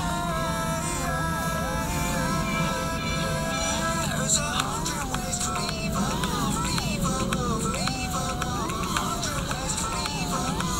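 Five-inch FPV quadcopter's brushless motors and props whining, heard from the onboard camera: several steady tones for the first few seconds, then the pitch swooping up and down again and again as the throttle is worked through the flight.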